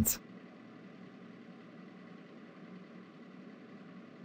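A spoken word ends right at the start, then a faint, steady background hum with no distinct events.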